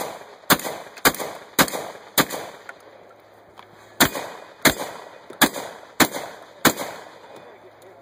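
Shotgun fire: a rapid string of about five shots roughly half a second apart, a pause of nearly two seconds, then another string of five shots.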